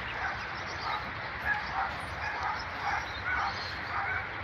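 Dogs barking and yipping: a scattered string of short calls over a steady background hiss.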